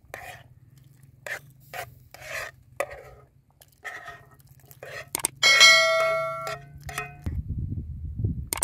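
Metal spoon scraping saucy chickpeas out of a metal pan into a stone pot, in a series of short scrapes. About five seconds in, metal rings out loudly for about a second, the spoon striking the pan.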